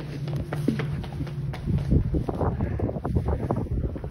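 Footsteps and handling knocks as a phone is carried across a concrete platform, with wind buffeting the microphone. A low steady hum sounds underneath for about the first second and a half, then fades out.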